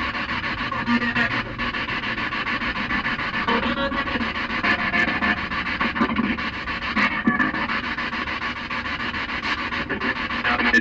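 Spirit box sweeping through radio frequencies: continuous hissing static, choppy and flickering, with a few brief snatches of tone.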